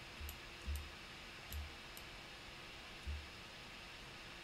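Four faint clicks, each with a soft low thump, from clicking and dragging on the computer to turn the on-screen model. Quiet room hiss lies under them.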